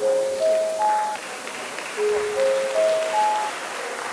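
An electronic chime playing four rising notes, struck twice about two seconds apart.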